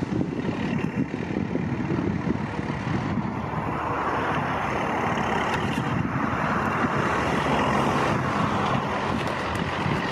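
Diesel engine of a forestry machine clearing brush, running steadily, mixed with road traffic noise that swells about four seconds in and eases off near the end.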